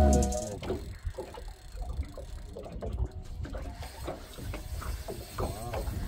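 A spinning or baitcasting fishing reel being cranked in short, repeated strokes under the load of a hooked sturgeon, over a low rumble of wind and water. Background music fades out in the first half second.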